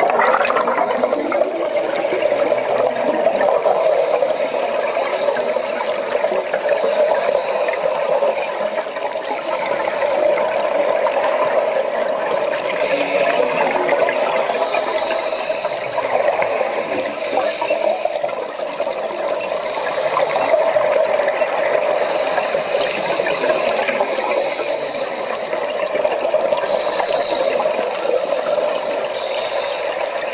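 Steady rushing, muffled water noise of an underwater recording, with no clear single events.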